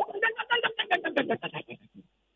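A man's voice over a telephone line laughing in a quick, even run of short pulses, about eight a second, tailing off near the end.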